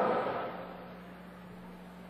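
A pause in a man's amplified speech: the end of his voice dies away in the echo of a large hall, leaving faint room noise and a low steady hum.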